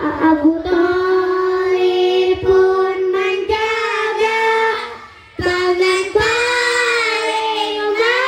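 A group of children singing together in unison, holding long notes with a slight wavering in pitch, with a brief break for breath about five seconds in.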